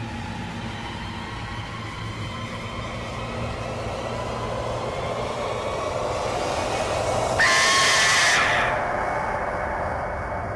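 Dramatic soundtrack sound design: a low rumbling drone swelling slowly, then a loud hissing whoosh with a shrill whistling tone for about a second, just past halfway, before it dies back down.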